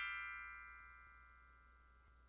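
The ringing tail of a quick descending run of chime-like notes: several tones held together and fading away, gone after about a second and a half.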